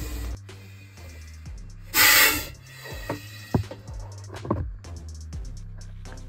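A monocled cobra gives one short, forceful hiss about two seconds in, lasting about half a second, while hooded as a defensive warning. Background music plays throughout.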